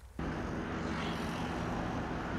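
Steady outdoor city engine noise: a low hum under an even rush of sound, cutting in abruptly a moment in.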